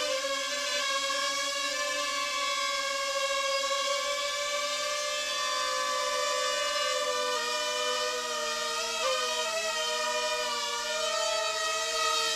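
Ryze Tello mini quadcopter hovering: its propellers make a steady, high multi-tone whine. The pitch wavers and dips briefly about nine seconds in, then settles again.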